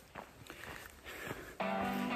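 Faint footsteps on a trail, then background music with steady held notes comes in near the end.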